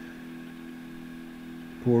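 Steady low hum made of several held tones, running unchanged through a pause in speech, with a man's voice starting again near the end.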